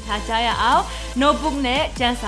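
A woman talking to the camera, her voice rising and falling in pitch.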